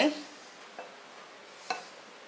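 Rice flour being poured by hand from a plastic bowl into a glass bowl: a faint, soft hiss with two light ticks, one near the middle and a sharper one near the end.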